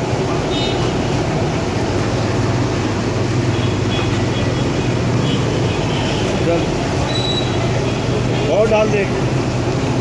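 Steady roadside noise: a continuous low rumble with hiss, unchanging in level, and a man's voice briefly near the end.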